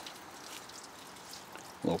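Water trickling into the bowl of a 1927 Standard Devoro flushometer toilet at the tail of a weak flush, a faint, steady hiss.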